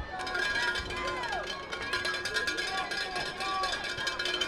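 Several voices chanting in a sing-song, like a cheer, with steady outdoor crowd noise behind them.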